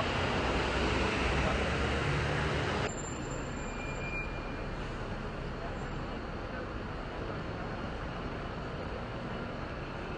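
City street noise: steady traffic with a low rumble, which drops suddenly about three seconds in to a quieter, even hiss of the street.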